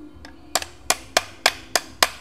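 Rapid, even metal tapping from a hand tool used as a makeshift hammer, striking a VW Beetle speedometer housing to drive out the speedometer cable tube. The blows start about half a second in and come about three to four a second.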